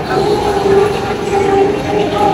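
Electronic train sound effect from a kiddie ride car's speaker: held whistle-like tones, with the hubbub of a busy public hall behind.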